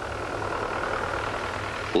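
Farm tractor engine running steadily under load in the field, a constant even drone.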